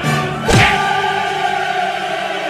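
Dramatic choral music: a thump about half a second in, then a choir holding a chord.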